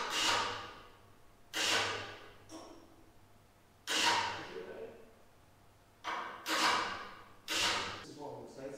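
Sharp knocks and clatters from fitting parts on the van's stainless steel roof rack, about six in eight seconds, each trailing off over about a second in a large echoing workshop.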